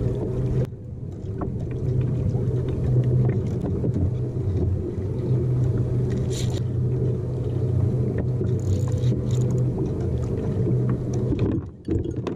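Steady low rumble with a hum: water and wind noise on the kayak-mounted camera while the kayak is towed about by a hooked fish. It drops away briefly about half a second in and again near the end, with a short hiss about halfway through.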